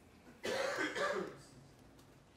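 A person coughing: a short double cough about half a second in, in a large room.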